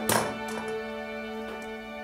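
A short puff of breath at the start, then a small plastic Lego build toppling onto a wooden tabletop with a few light knocks in the first half-second. Soft sustained background music runs underneath.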